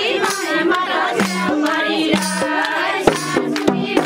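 A Nepali Teej folk song: women singing over steady held low notes, with sharp percussive beats that come thick and regular from about three seconds in.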